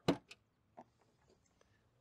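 A sharp click, then two fainter clicks within the first second: a key turning in the trunk lock of a 2009 Ford Mustang GT and the trunk-lid latch releasing.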